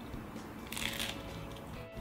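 A single brief crisp crunch of a toasted sourdough BLT with crispy bacon, about a second in, over background music.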